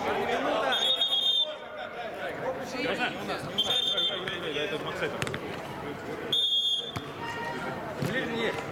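A referee's whistle gives three short, steady blasts about three seconds apart, over players' shouting voices.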